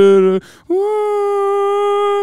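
A man's voice singing wordlessly: a held note cuts off early, and after a short break a single long, steady high note is sustained.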